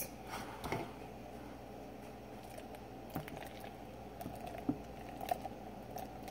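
Quiet handling sounds: a few faint clicks and knocks as a beer can and a plastic cup are handled, with beer starting to pour into the cup near the end.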